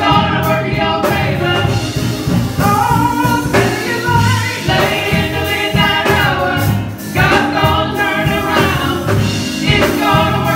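Gospel singing by a group of four women singing together into handheld microphones.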